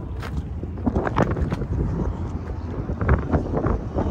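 Wind buffeting the phone's microphone with a steady low rumble, with indistinct voices of people nearby breaking through now and then.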